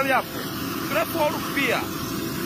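A man's voice in short fragments of speech over a steady low outdoor rumble.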